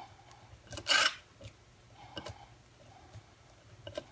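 A 3-inch wood screw turned by hand into un-drilled wood with a cordless screwdriver used as a manual driver. A short rasping scrape about a second in, then a few faint clicks.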